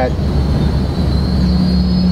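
Steady low mechanical drone of a concrete mixing and pumping station's motors running. A steady low hum grows stronger about one and a half seconds in, over a faint high whine.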